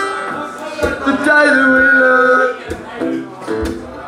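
Acoustic guitars played live, with a voice holding a wavering note from about a second in. The sound drops to quieter picked guitar after about two and a half seconds.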